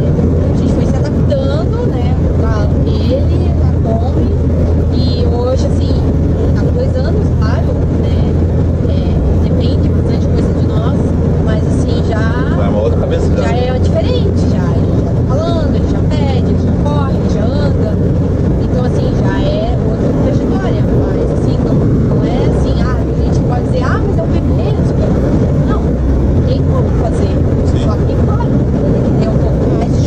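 Steady road and engine rumble inside the cabin of a van driving along a highway, under a man's voice talking.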